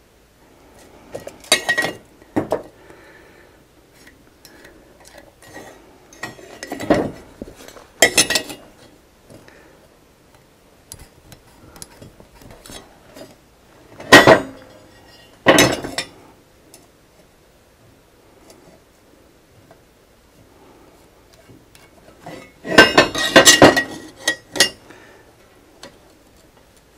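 Steel tubing and metal tools clanking against a steel welding table as they are picked up and set down: scattered knocks with a short metallic ring, coming in separate bunches with a busier run near the end.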